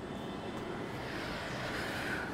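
Chalk scratching faintly on a blackboard over a steady room hiss, the scratchy sound picking up about halfway through.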